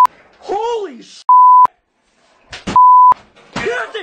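Censor bleeps, a steady 1 kHz beep sounding in short blocks, two full ones about a second and a half apart plus the tail of another at the start, cutting across a man's yelling voice.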